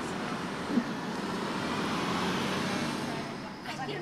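Steady road-traffic noise with a low hum underneath and a single small click about a second in.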